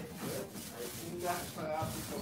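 Paint rollers and brushes rubbing paint onto wooden wall boards: a continuous scratchy rubbing.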